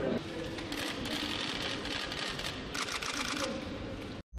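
Camera shutters clicking in rapid bursts, about a second in and again near three seconds, over a steady murmur of people in a hall.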